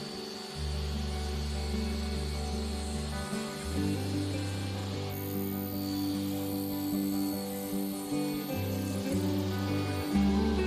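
Background music: low sustained chords, each held for a few seconds before changing.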